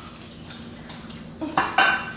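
Light clinks and knocks of children's hands and jelly pieces against a glass baking dish, with two short louder sounds near the end.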